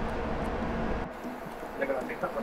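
Faint voices over a steady low kitchen hum. The hum cuts off suddenly about halfway through, leaving only the quieter voices.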